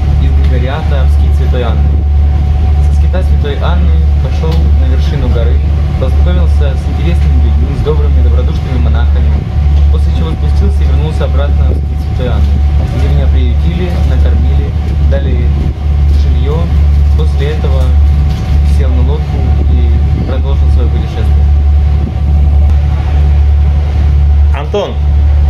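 Loud, steady low drone of a passenger boat's engines heard inside its cabin, with a faint steady whine above it and a man's voice talking over it throughout.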